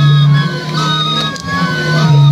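A Dirashe fila ensemble of end-blown flutes plays. Each flute sounds short notes at its own pitch, and the notes alternate and overlap into one interlocking tune over a steady low tone.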